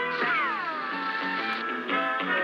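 Cartoon background music with a falling, cry-like sound effect about a quarter-second in that slides down in pitch over about half a second.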